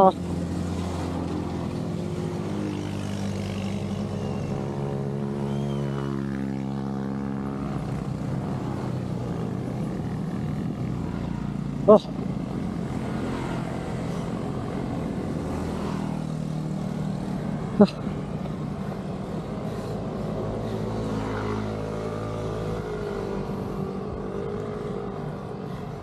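Motorcycle engines running on the road, their pitch shifting as they pass a few seconds in and again near the end, over steady wind and road noise. A brief shout about 12 s in and a short sharp click about 18 s in.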